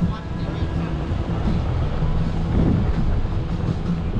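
A moving vehicle's low, steady road and engine rumble, with a radio playing music and voices faintly over it.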